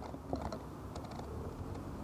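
Scattered light clicks and ticks, mostly in the first second, over a steady low rumble of street background noise.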